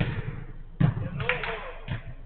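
A football thudding three times, the loudest about a second in, with a short shout from a player between the last two thuds.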